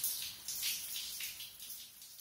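Shower spray running, a steady hiss of water that slowly fades toward the end.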